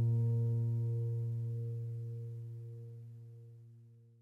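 The last low chord of a piano music track, held and dying away slowly until it fades out near the end.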